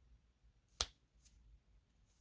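Near silence broken by one sharp click a little under a second in, and a fainter tick about half a second later.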